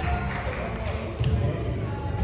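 Volleyball play in a gym with a hard floor: one sharp ball hit or bounce about a second in, over a low hall rumble and distant voices.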